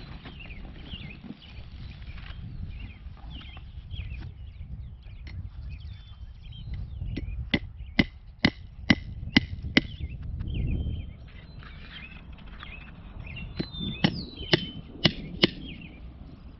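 Hammer driving fence staples into a wooden fence post to fasten V-mesh wire: a run of about six sharp strikes, roughly two a second, then a pause and about five more.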